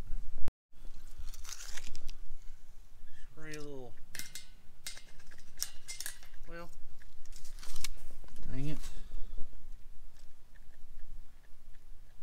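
Scattered sharp clicks, knocks and light metallic rattles of handling around a metal livestock creep feeder, with a few short wordless vocal sounds from a man, one falling in pitch.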